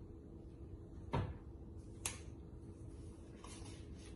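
Handling sounds as a disposable plastic glove is pulled off: a dull knock about a second in, a sharp click a second later, then faint rustling, over a steady low hum.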